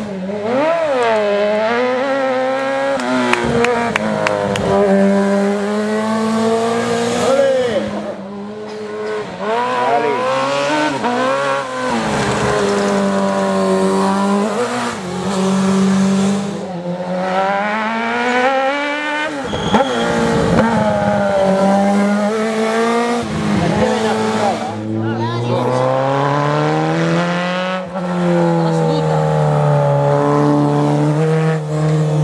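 Racing sidecar outfits' high-revving engines passing one after another through a tight bend, the pitch repeatedly dropping off as they brake into the corner and climbing again as they accelerate away.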